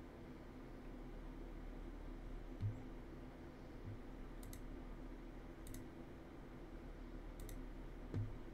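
Computer mouse clicking three times, a second or so apart, over a steady low hum; two soft low thumps come shortly before the clicks.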